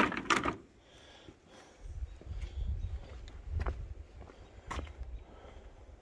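A few light metal clinks of tools in a socket tray, then footsteps with a low, uneven rumble of the camera being carried.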